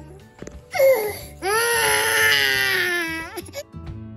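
Infant crying: one short cry, then one long wail with a slowly falling pitch. Music starts near the end.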